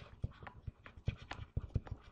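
Stylus tapping and scratching on a pen-input screen during handwriting, a quick irregular run of light clicks.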